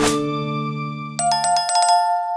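Channel outro music: a short whoosh, then a held chord fading away. About a second in, a bright bell-like chime of several quick notes sounds, a notification-style ding.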